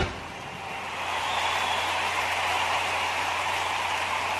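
Audience applauding, a steady even patter that swells over the first second, with a low hum underneath.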